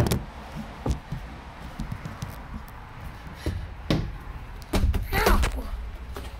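Hollow knocks and thumps of a person clambering through a plastic playground climbing structure: a sharp knock at the start, single knocks about a second in and just before four seconds, then a longer scuffling cluster of bumps about five seconds in.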